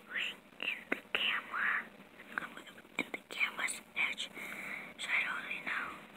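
A person whispering in short breathy phrases, with a few small clicks.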